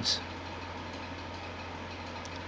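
A steady low hum over faint even background noise, with no distinct taps or other events.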